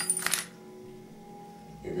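A sudden clatter of small hard objects falling and scattering, dying away about half a second in, over quiet background music.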